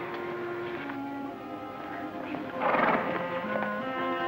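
Background score of held, sustained notes that step from one pitch to the next. A little past halfway, a horse gives one short, loud whinny over the music.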